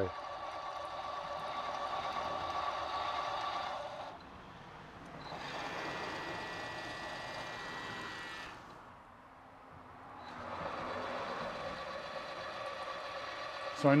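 Electric servo tapping machine's motor whining as it drives a tap into holes in an aluminium plate. It runs in three stretches of three to four seconds with short quieter pauses between them, and the middle stretch is higher in pitch.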